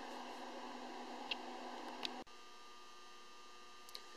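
Faint steady electrical hum with a light hiss: room tone. The hum drops slightly at a sudden cut about two seconds in.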